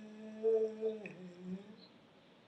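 A voice softly humming the fading tail of a long chanted meditation syllable. The held note dips in pitch about a second in and dies away.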